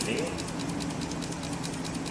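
Ignition system trainer board running, giving a steady mechanical hum with a fast, even ticking over it.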